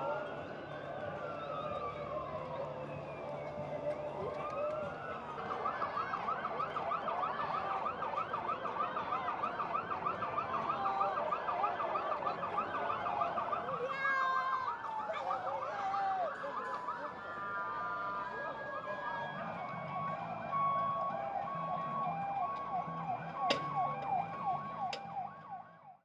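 Police vehicle sirens sounding over crowd and street noise: slow wails at first, switching to a fast yelp for several seconds, then short repeated tones with another siren sweeping under them. Two sharp cracks ring out near the end.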